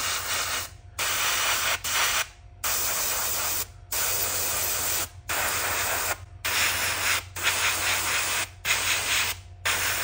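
Airbrush spraying black paint in a series of short hissing bursts, roughly one a second, each cut off briefly as the trigger is let up. A faint low steady hum runs underneath.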